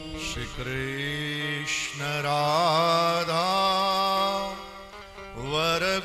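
A man singing a slow devotional chant, with long held notes and wavering ornaments in the melody, and a brief break about five seconds in.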